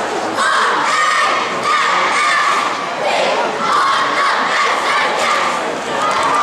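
A cheerleading squad of girls shouting a cheer together in a series of short, high-pitched phrases.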